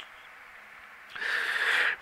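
A quiet pause, then about a second in a short breath drawn in through the mouth before speaking, lasting just under a second.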